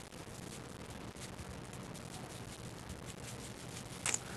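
Quiet room tone with faint, soft crumbling and rubbing as crumbly pie dough is pressed with the fingers into an aluminium foil pie pan.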